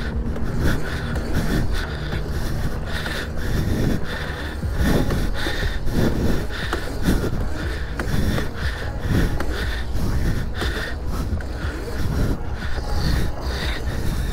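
Wind rushing and buffeting on the microphone while riding, in irregular gusts.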